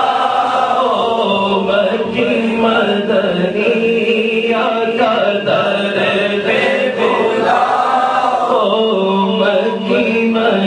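Voices chanting a devotional song in a continuous, melodic line, with a steady low note held underneath.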